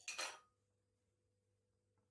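A fork briefly clinking and scraping against a ceramic salad plate at the start, then near silence.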